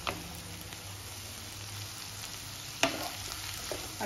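Mixed vegetables sizzling steadily as they stir-fry on high flame in a nonstick wok, with two sharp taps of the spatula against the pan, one just after the start and one near three seconds in.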